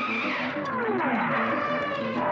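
Cartoon logo sound effect: several whistle-like tones that slide down in pitch over about a second, over a held tone, then settle into steady ringing notes.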